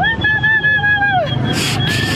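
A person making a long, high held call to draw pigeons, wavering slightly and dropping away after about a second. Near the end comes a short rushing flutter as pigeons fly in.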